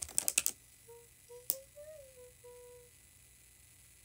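A quick run of light clicks or taps, then a woman softly humming a few notes that rise and fall, with one more click partway through.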